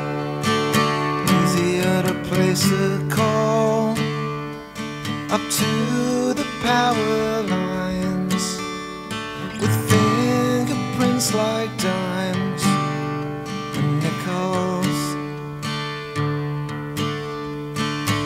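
Live acoustic guitar strumming in an instrumental break of a folk-rock song, with a lead melody line that slides between notes over it.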